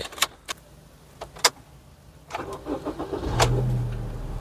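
A few sharp clicks and knocks, then the Honda Amaze petrol engine cranks briefly and catches quickly, about three seconds in, settling into a steady idle; the freshly serviced engine starts promptly.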